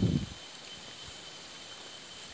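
Quiet outdoor background with a thin, steady high-pitched insect drone over a faint hiss, after a short low rumble on the microphone at the very start.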